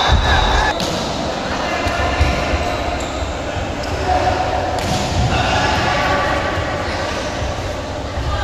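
Indoor volleyball play: a few sharp thumps of the ball being struck and bouncing, over continuous voices of players and spectators, echoing in a large hall.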